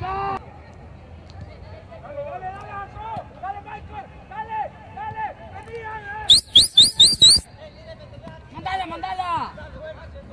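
Players and people on the touchline calling out across a football pitch during play. About six seconds in comes a short, loud run of five quick rising high-pitched chirps.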